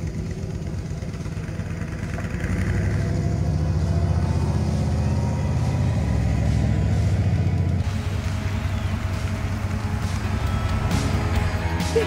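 1978 Chevrolet Corvette's 350 V8 running as the car drives by, exhausting through side pipes. The engine sound swells about two seconds in and eases back near eight seconds.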